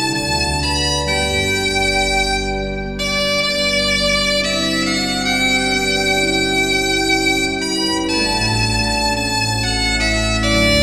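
Bombarde and pipe organ playing a Breton hymn tune: the bombarde carries the melody in long held notes over sustained organ chords and low pedal notes.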